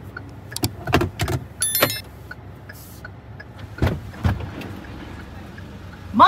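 Clicks and knocks of a car's rear door being opened from outside, with a brief high electronic chirp about two seconds in, over a low steady rumble in the car cabin.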